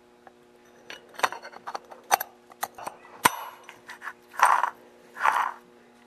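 Light metallic clicks and clinks as a new steel spur sprocket clutch drum is turned by hand and seated over its needle cage bearing on a Stihl MS 250 chainsaw crankshaft, followed by two short scrapes near the end.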